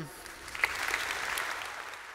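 Audience applauding. The clapping starts about half a second in and holds steady.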